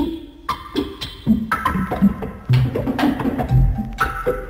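Opening bars of a Hammond organ cha-cha-cha recording: wood-block-like percussion clicks in a steady rhythm, with organ tones coming in about one and a half seconds in and low drum hits joining shortly after.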